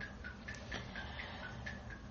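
Faint, fast ticking, about four to five short ticks a second, over a low steady hum.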